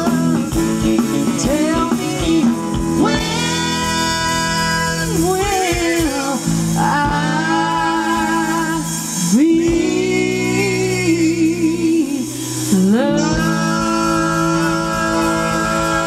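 Live blues-rock band: a woman sings long held notes with vibrato and swooping slides between them, over electric guitars, bass and drums.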